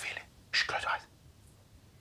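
A man whispering a short phrase about half a second in, then quiet room tone.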